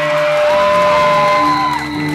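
Three-piece rock band playing loud live: electric guitar, bass and drums. A high note slides up about half a second in, holds for about a second, then falls away near the end.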